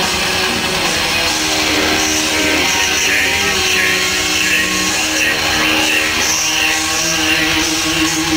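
Black metal band playing live: distorted electric guitars over drums and cymbals, loud and steady.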